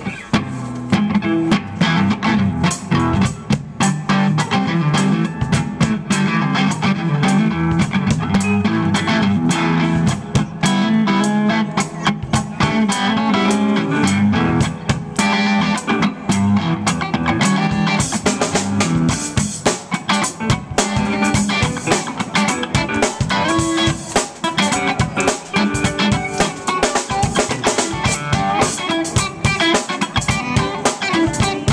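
Live band playing an instrumental funk groove on electric guitar, drum kit and Roland keyboard, kicking off right at the start and running steadily.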